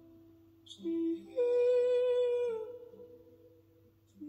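Slow, soft music: a voice humming a melody, with a short note about a second in and then a long held note that dips slightly and fades out, over a faint sustained low tone.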